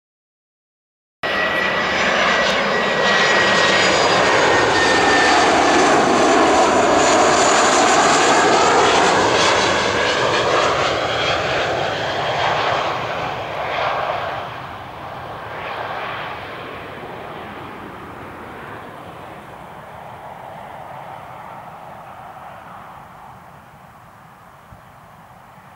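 Boeing 737-400's CFM56-3 turbofan engines on final approach, passing low overhead with the gear down: a loud jet rush with a high whine that starts suddenly about a second in, holds loud for several seconds, then fades steadily as the airliner descends away toward touchdown.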